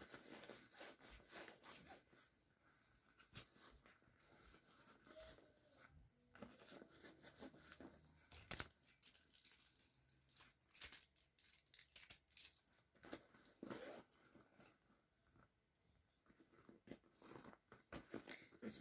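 Keys and other small items clinking and rustling as they are packed back into a fabric backpack's front pocket, with a run of louder jingling clicks in the middle.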